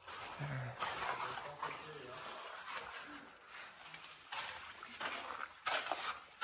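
Faint, indistinct voices over uneven rustling noise.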